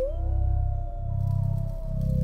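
A wolf howl: one long call that rises at the start, holds, and then slowly sinks, over a low pulsing music drone.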